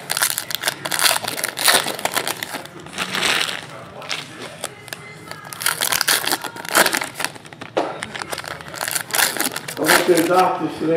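Foil wrappers of 2016-17 Excalibur basketball card packs crinkling and crumpling in irregular bursts as the packs are handled and torn open.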